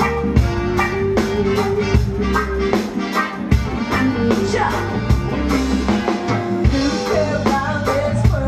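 Live reggae band playing a song, with drum kit, bass and guitars keeping a steady beat.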